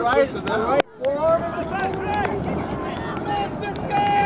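People talking, their voices mixed and unclear, with the sound dropping out briefly just under a second in.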